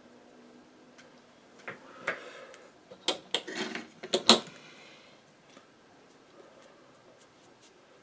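A short run of light knocks and clatters from a paintbrush being handled and picked up, loudest about four seconds in, followed by a few faint ticks.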